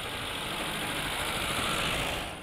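Classic Lada (Zhiguli) sedan driving slowly past on fresh asphalt: steady engine and tyre noise, growing a little louder as the car comes close.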